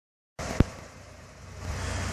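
A sharp click shortly after the start, then the low, steady hum of an idling vehicle engine that grows a little louder toward the end.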